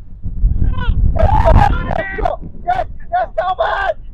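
Men's voices shouting, a longer call about a second in and then several short calls, over wind rumbling on the microphone.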